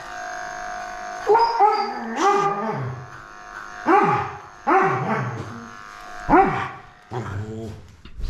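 Old dog crying out in about half a dozen drawn-out, falling whines while being clipped, over the steady hum of a cordless electric clipper.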